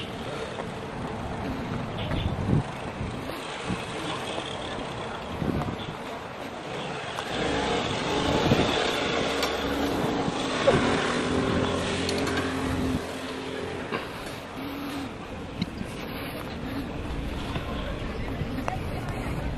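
Outdoor background noise that swells through the middle and eases again, with faint voices and a few light knocks.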